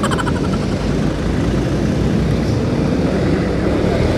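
Steady riding noise from a motor scooter under way: wind rushing over the camera's microphone, with the engine and tyres underneath.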